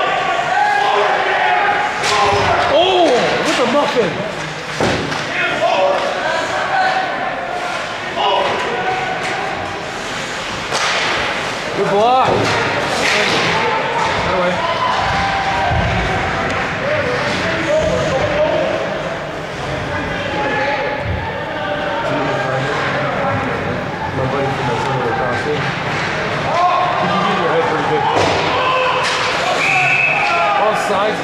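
Ice hockey game sound: a continuous hubbub of voices and calls, broken by several sharp bangs and thuds of the puck, sticks and players hitting the boards.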